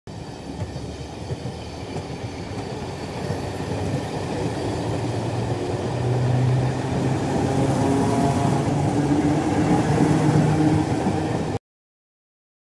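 Battery-powered toy bullet train running on plastic track: a steady motor and wheel rattle with a low hum, growing louder as it goes, that cuts off suddenly near the end.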